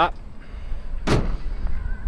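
Pickup tailgate of a 2021 Chevy Colorado swung shut by hand, latching with a single slam about a second in.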